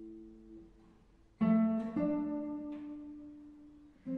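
Solo nylon-string classical guitar: ringing notes fade to a near pause, then a loud plucked chord about a second and a half in, with a new note about half a second later that rings on.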